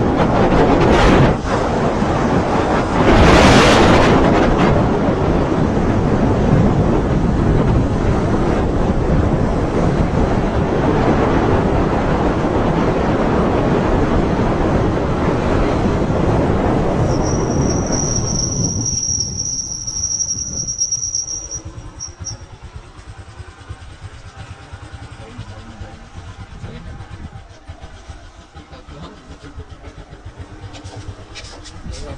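Wind rushing over the microphone with road noise from a moving motorcycle, with a louder gust about three seconds in; the rush fades away over a few seconds past the middle as the bike slows and stops. A thin high squeal is held for about four seconds while it slows.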